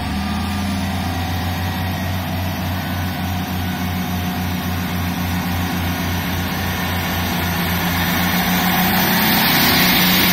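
Diesel engines of a Class 158 diesel multiple unit running with a steady low, pulsing throb and a faint high whine as the train pulls away along the platform, growing louder near the end.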